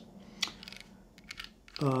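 A few faint, light clicks: one sharper click about half a second in, then a quick run of small ticks, with a voice starting near the end.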